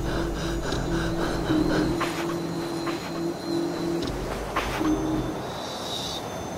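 Background music with a repeating low note pattern and a quick steady pulse of about five beats a second, with sharp hits about two seconds in and again near the end.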